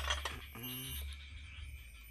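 Light clicks of metal scooter CVT parts being handled, with a short hummed voice sound about half a second in, over a steady low hum.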